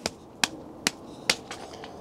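Hands clapping in a slow clap: four single claps evenly spaced a little under half a second apart.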